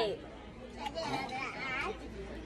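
Quieter voices talking in the background, with one brief click about a second in.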